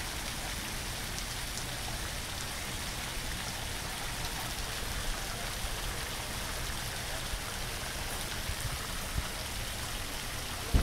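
Water-curtain fountain: streams of water running down a row of vertical wires and splashing steadily into a shallow pool, a constant rain-like patter with a few louder drips.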